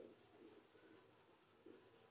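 Faint scratching of a marker writing on a whiteboard, with a light tap as the marker goes onto the board at the start.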